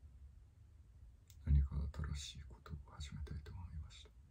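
A man muttering quietly and indistinctly under his breath, with a few small clicks, starting about a second and a half in.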